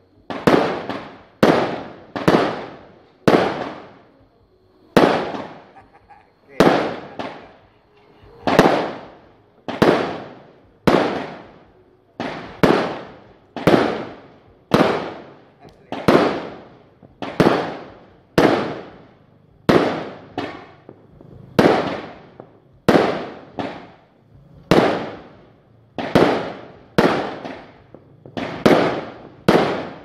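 Aerial fireworks bursting in a steady run, a sharp bang about once a second, each trailing off in a fading echo, with a short pause about four seconds in.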